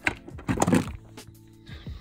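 Plastic golf discs knocking and scraping against each other as one is pulled from a tightly packed stack: a sharp click at the start, then a short clatter about half a second in.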